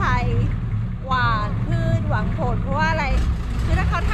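A woman talking over the steady low drone of a longtail boat's engine.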